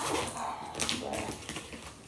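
Hands handling a hard-shell suitcase: irregular taps, clicks and rustles against the plastic shell as a paper luggage tag on it is taken hold of.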